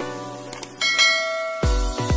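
Outro background music: held synth chords, with a bright bell-like chime about a second in, then a deep pulsing bass beat coming in near the end.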